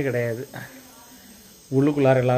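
Crickets chirping steadily in the background, with a man's voice briefly at the start and again near the end.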